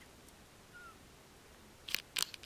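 Quiet forest background with a single faint, short bird chirp a little under a second in, then a sharp click near the end.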